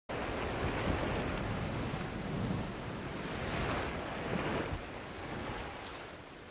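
Stormy sea: a steady rush of waves and wind in heavy rain, swelling a couple of times.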